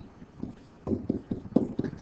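Stylus pen tapping and scratching on a tablet surface while handwriting, an irregular run of short taps starting about half a second in.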